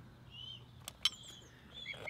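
Faint bird chirps outdoors: a short call about half a second in and another near the end, with a couple of light clicks around the one-second mark.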